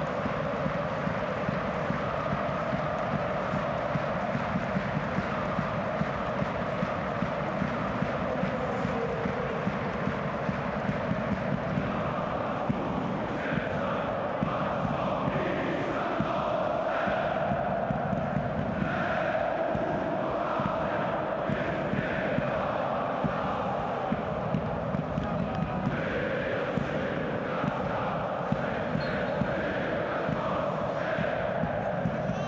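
Football stadium crowd chanting and singing in unison, a steady mass of voices.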